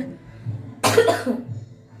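A person coughs once, sharply, about a second in.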